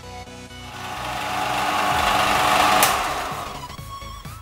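Benchtop belt and disc sander sanding a wooden box: a rough sanding noise swells to its loudest near three seconds in, with a sharp click at the peak, then fades, over background music.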